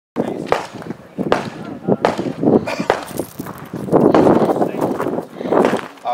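Indistinct voices of people talking, broken by several sharp knocks.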